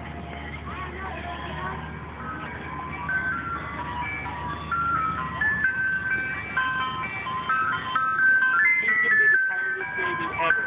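Ice cream truck chime playing a tune of clear single high notes, growing louder, over a steady low hum.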